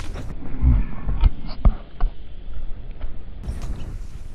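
Several dull low thumps among rustling, muffled for most of the stretch.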